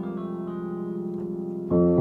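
Grand piano: a held chord rings on and slowly fades, then a new, louder chord is struck near the end.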